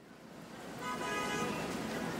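A wash of noise fading in from silence, with a short horn-like toot about a second in.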